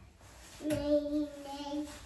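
A young child's voice holding one sung, steady note for about a second, rising slightly at the end.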